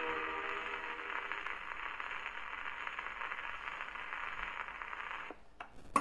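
Acoustic horn gramophone playing a shellac 78 rpm record as the last notes die away, leaving the record's surface hiss and crackle through the horn. About five seconds in the hiss cuts off suddenly, followed by a small click and then a sharp knock at the very end.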